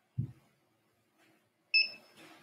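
A short dull thump, then near the end a brief high beep that stops almost at once, followed by soft rustling.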